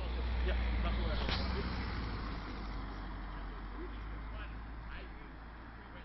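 A car on the road nearby, a low engine and tyre rumble that is loudest in the first two seconds and then slowly fades, with a sharp click about a second in.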